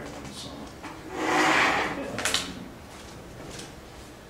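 A scraping, sliding sound lasting about a second, followed by a sharp click.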